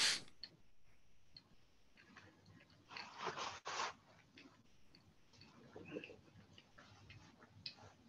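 Faint scattered clicks and taps, with a sharp click at the very start and a brief rustling noise about three seconds in.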